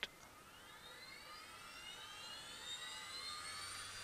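Small brushless DC motor spinning up from nearly stopped, its whine rising steadily in pitch and growing louder, several tones climbing together.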